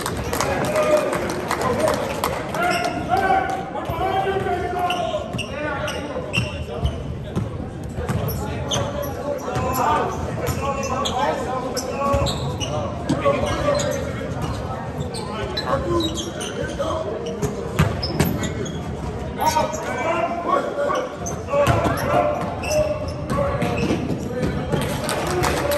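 Live basketball game in a large gym: the ball bouncing on the hardwood court, with players and spectators calling out throughout.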